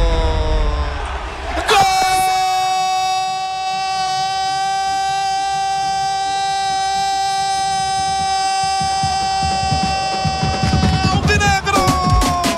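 Radio football commentator's goal cry: one long "gooool" held on a single high pitch for about nine seconds, starting about two seconds in and falling away near the end.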